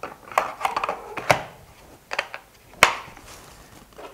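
Irregular clicks and knocks of a steel manual impact screwdriver being handled and laid into its moulded plastic case, the sharpest knock about three seconds in.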